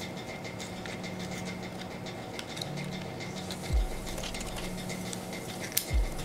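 Small clicks and scratches of a Honda flip-key shell and its blade spring being handled and worked together by hand, over a steady low hum, with a dull bump a little before four seconds in.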